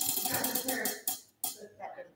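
Tabletop prize wheel spinning, its pointer flapper clicking rapidly over the pegs. The clicks slow and die out with a last few separate ticks about a second and a half in as the wheel comes to a stop.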